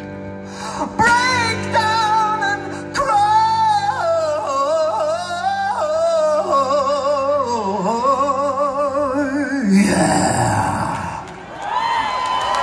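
A live rock band with a male lead singer holding long, wavering notes over the band. The song ends with a loud final hit about ten seconds in.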